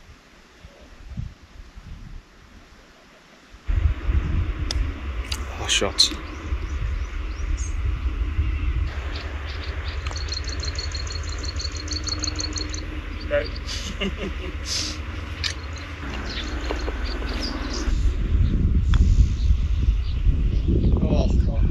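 Outdoor ambience with wind buffeting the microphone as a low rumble that starts suddenly a few seconds in, and a rapid chirping trill from a bird partway through.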